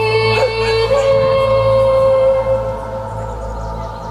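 A singer holds one long note through a microphone, sliding up onto it about a second in and releasing it at about two and a half seconds, over the show band's steady accompaniment.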